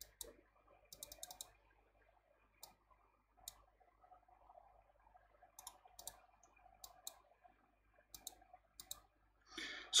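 Computer mouse clicking: a dozen or so sharp, quiet clicks spread irregularly, some in quick pairs or small runs, over a faint room background.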